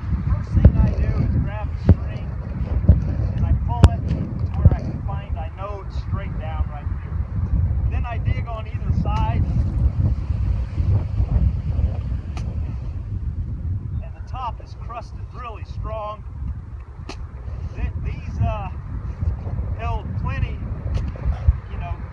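Wind rumbling on the microphone, with a few sharp knocks as a shovel blade chops into crusted snow around a buried tent stake.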